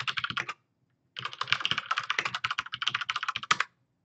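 Typing fast on a computer keyboard: a short run of keystrokes, a pause of about half a second, then a longer rapid run of keystrokes ending in one sharper keystroke.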